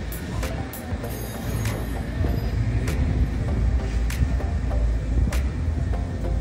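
Wind buffeting the microphone as an uneven low rumble, with music and scattered sharp ticks in the background.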